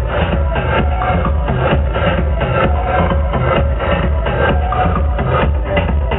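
Electronic dance music played by a DJ through a stage PA, with a steady kick-drum beat and heavy bass.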